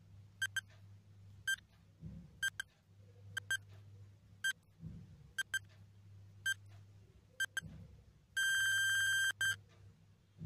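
Countdown timer sound effect: short high beeps about once a second, then a loud, rapidly pulsing ringing alarm for about a second near the end as the count reaches zero and time is up. A soft low thud recurs every few seconds underneath.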